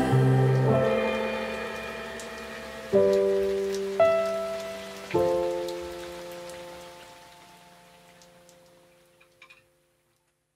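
Closing chords of a pop song played by a live band. A held chord moves to a new one about a second in, then three more chords are struck about three, four and five seconds in, each ringing and fading, until the music dies away to silence.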